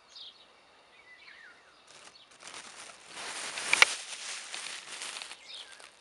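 Faint bird chirps, then a rustling noise for about three seconds starting about two seconds in, with one sharp click near its middle.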